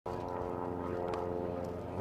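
A steady engine drone holding one pitch, with a faint tick a little over a second in.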